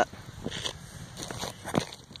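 Boots shifting and stepping on a gravel path: a few irregular soft crunches and scuffs, with a sharper click near the end.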